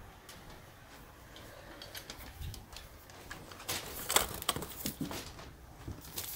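Scattered soft clicks, knocks and rustles of a handheld phone being moved and handled, with a cluster of louder knocks about four seconds in.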